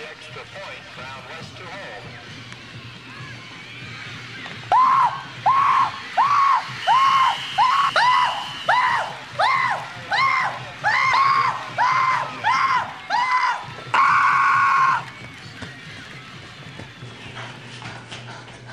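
A young man's voice chanting a fast run of short, wordless rising-and-falling yells, about two a second, in celebration, ending in one longer held shout.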